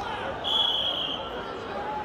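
Wrestling referee's whistle blown once, a short steady high blast about half a second in, over crowd chatter.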